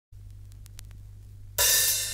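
Vinyl record lead-in groove: a low steady hum with a few faint surface clicks, then about one and a half seconds in the track starts with a loud cymbal crash.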